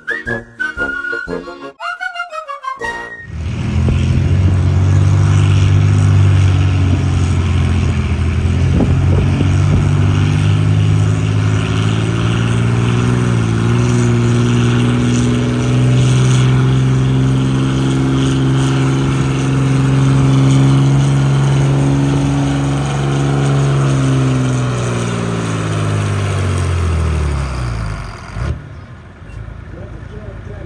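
A pulling vehicle's engine running hard under load for over twenty seconds, at high, fairly steady revs, then winding down and falling in pitch near the end. It is preceded by a few seconds of whistling tones.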